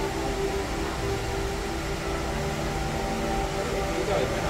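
Steady room noise: an even hum and hiss with a few faint held tones.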